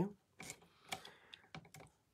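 A few faint, sharp clicks and taps with a soft rustle: cardstock being shifted and pressed on a plastic paper trimmer.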